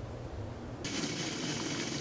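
Faint wind noise outdoors, then a cut a little under a second in to the steady bubbling hiss of maple syrup boiling down in a large stockpot on a stove.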